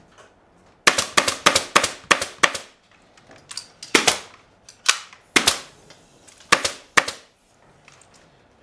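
Pneumatic staple gun firing staples into a wooden chair's seat frame to fasten jute webbing: a quick run of about seven sharp shots starting about a second in, then about six more, spaced out.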